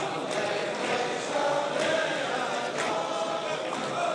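A large crowd of men singing together in chorus, many voices holding one wavering melody.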